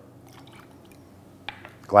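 Honey syrup dribbling faintly from a jigger into a mixing glass, with one light click about one and a half seconds in.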